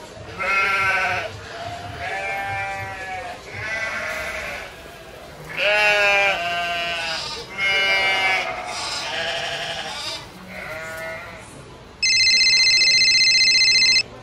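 A high-pitched voice makes a series of drawn-out, wavering cries with no words, about eight of them. About two seconds before the end, a loud, steady electronic beep sounds and holds.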